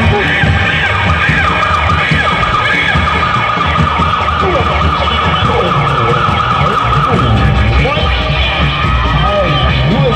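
Loud live music accompanying a Reog street performance: drums with many sliding melodic pitches over it, and one long held high note in the middle.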